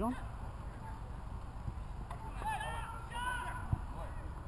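Geese honking, two short runs of calls in the second half. A man's shout at the start, and a single dull thud of a football being kicked shortly before the end.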